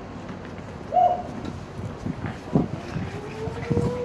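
A bird calling outdoors: one short, arching call about a second in, then a longer call that slowly rises in pitch near the end, with a few low thumps in between.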